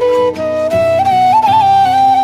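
Background music: a flute melody of long held notes with small ornamental turns, over a low sustained accompaniment.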